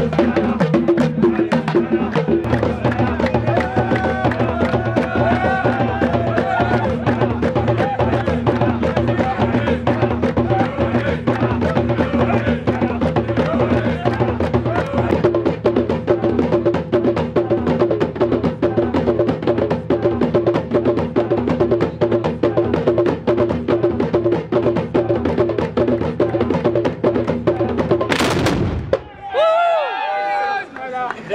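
Baroud troupe's hand drums beating a fast, steady rhythm, with voices over them. About two seconds before the end a single loud crack of black-powder muskets fired together cuts through it, and shouting follows.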